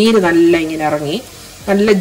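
A woman speaking, with a brief pause about a second in where only a faint steady hiss is heard.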